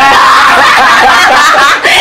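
Several people laughing loudly together, their voices overlapping in one continuous burst of group laughter.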